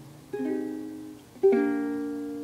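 Ukulele strummed twice, two chords about a second apart, each ringing out and fading.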